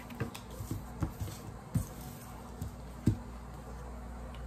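Tarot cards being handled and laid down on a wooden desk: several soft, scattered taps and light rustles, the clearest one about three seconds in.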